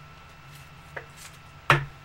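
A clear plastic card holder knocking against the table and card stack: a faint click about a second in, then a sharp knock near the end.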